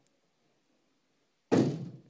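Near silence, then a single sudden loud thud about a second and a half in that fades out over about half a second.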